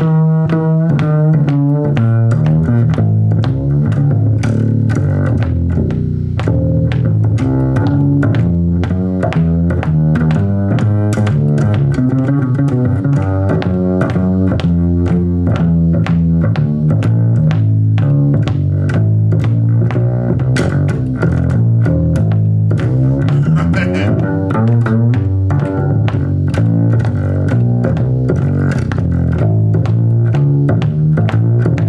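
Five-string acoustic upright bass with D'Addario Helicore Hybrid strings, played pizzicato in a blues: a steady, busy run of plucked low notes, each with a long, smooth sustain.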